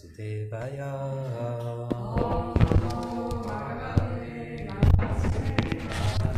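A slow devotional mantra chanted in long held notes, with several sharp knocks and thumps close to the microphone; the loudest come about two and a half and five seconds in, from the microphone being handled.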